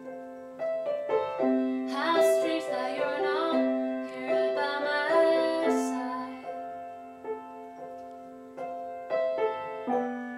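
Upright piano playing a slow instrumental passage of a song: held chords over a steady low note. A second, higher melody line joins in the middle for a few seconds.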